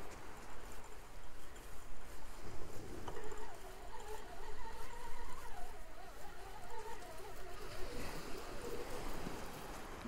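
Beach-casting fishing reel being wound in, its gears giving a wavering whine for about five seconds in the middle, over a steady hiss of wind and surf.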